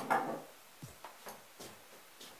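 Light handling noises as a pair of scissors is fetched and picked up: a brief scrape at the start, then four or five small clicks and knocks.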